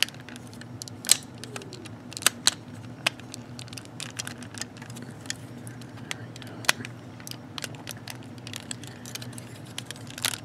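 Hard plastic parts of a transformable robot figure clicking and snapping as they are worked by hand and pressed together: a string of irregular sharp clicks, the loudest about a second in.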